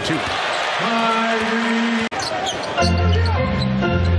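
Arena game sound from a basketball broadcast: crowd noise with a basketball being dribbled. About two seconds in, an edit cuts briefly to near silence, and music with a heavy bass comes in under the next play.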